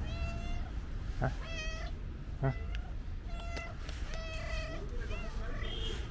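Tabby cat meowing repeatedly: a run of short, high, steady-pitched meows about a second apart.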